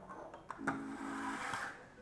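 Quiet background music with steady held notes, over a soft rustle of groceries being handled.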